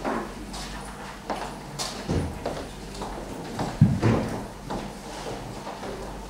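Irregular footsteps, knocks and shuffling as people move about a meeting room, with a few brief murmured voices.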